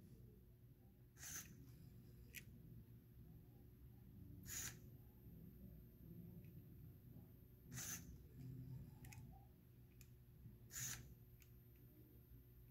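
Near silence, broken by faint short clicks of a LEGO EV3 touch sensor being pressed in slow, careful taps, about one every three seconds.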